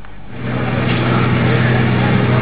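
A running motor: a steady low hum with a rushing noise over it, coming up about a third of a second in and holding steady.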